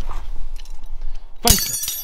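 Metal hand tools clattering as one is dropped onto a pile of spanners and tools on concrete: one sharp, ringing clatter about one and a half seconds in, over a low steady rumble.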